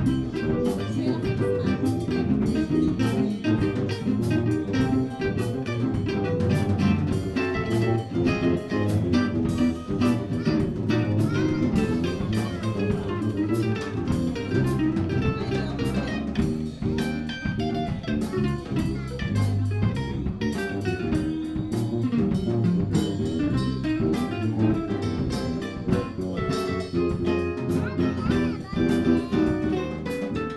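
Jazz band jamming live: archtop electric guitar, digital piano, electric bass and drum kit playing together, with the guitar prominent.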